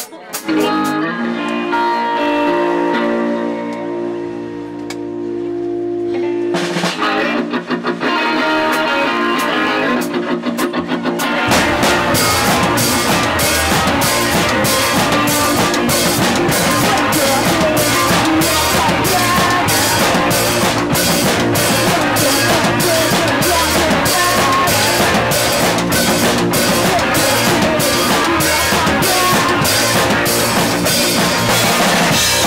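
Punk rock band playing live: electric guitar chords ring out on their own at first, then about eleven seconds in the drum kit and bass come in with a fast, steady beat and the full band plays on.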